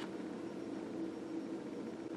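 Quiet room tone: a steady hiss with a low hum that comes and goes.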